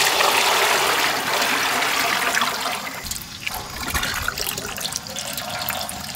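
Sesame oil poured in thick streams into a large metal cooking pot, a steady splashing pour that tapers off about two and a half seconds in, leaving a quieter, uneven sound with a low rumble.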